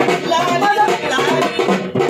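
Men singing a Marathi devotional song to Khandoba, with steady drum and rattle percussion beneath the voices.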